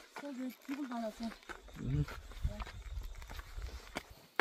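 Soft, quiet speech, a few short murmured phrases, with a low rumble coming in about halfway through from wind or handling on the microphone.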